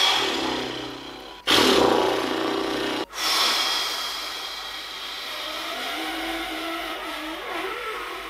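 A man's long, exasperated sighs and groans, blown out hard close to the microphone: three breaths in a row, the last one long and drawn out through pursed lips with a faint wavering hum near the end.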